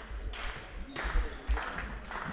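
Indoor handball court sounds: two knocks and a low thud from the ball or players on the court floor, over the hall's background noise.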